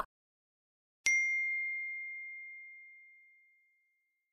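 A single bright bell-like ding about a second in: one clear high tone that rings and fades away over about two seconds.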